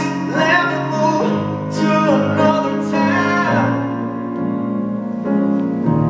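Live solo piano with a man singing over it, sustained notes and a held vocal line with bends in pitch.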